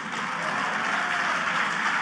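Audience applauding, a steady wash of clapping that swells in at the start and holds level.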